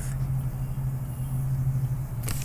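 Steady low hum with a rumble beneath it: the recording's background noise, with no other distinct sound.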